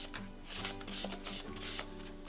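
Soft background music with held notes, over light rubbing and small clicks from a resin ball-jointed doll body being scrubbed with a melamine sponge and handled.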